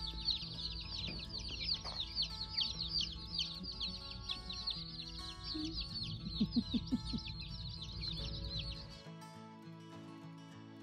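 A brooder full of baby chicks peeping, many high chirps overlapping in a constant chorus that stops suddenly about nine seconds in. Background music plays underneath and carries on after.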